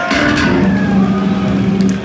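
Loud distorted electric guitars and bass through stage amplifiers. A chord is struck at the start, then a low note is held ringing.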